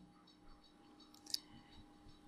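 Near silence with one short, sharp click of a computer mouse button a little over a second in.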